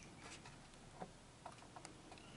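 Near silence: room tone with a few faint, irregular clicks, the clearest about a second in.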